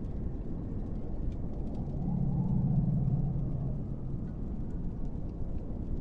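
A steady low rumble, with a low humming tone that swells in about two seconds in and fades a couple of seconds later. Faint scattered ticks sound above it.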